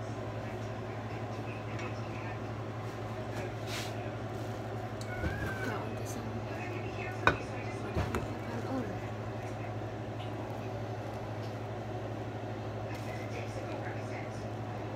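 Steady low hum under faint background voices, with one sharp knock about seven seconds in and a lighter one about a second later.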